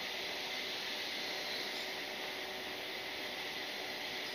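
Steady, even hiss of railway station background noise, with no clear low rumble, as a double-deck passenger train moves slowly along the next track.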